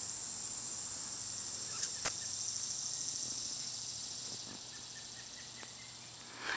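A steady, high-pitched insect chorus, with a single sharp click about two seconds in; the chorus grows fainter over the last couple of seconds.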